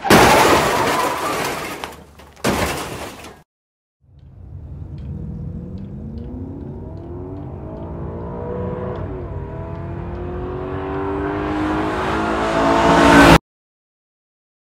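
Two short, loud noisy bursts, then a car engine accelerating: its pitch climbs, dips once about nine seconds in, and climbs again as it grows louder, before cutting off suddenly near the end.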